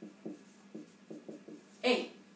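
Marker pen writing on a whiteboard: a series of short, quiet strokes as an equation is written out. Near the end comes one brief, louder sound.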